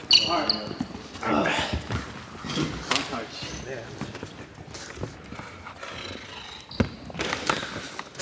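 A few basketball bounces on a hardwood gym floor, echoing in the large hall, under indistinct voices.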